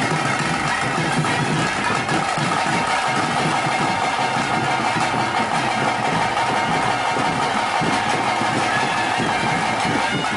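Drums of a ritual kola band playing a dense, continuous beat, with a steady high drone held over it.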